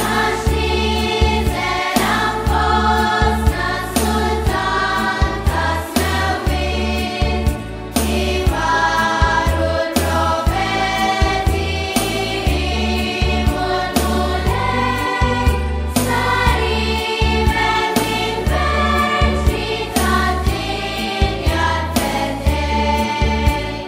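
Background music: a choir singing a traditional Maltese Christmas carol over instrumental backing with a steady beat.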